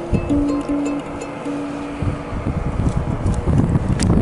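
Ukulele playing the last notes of a song: four notes, the last held longer and dying away about two and a half seconds in. After that, wind rumbles on the microphone.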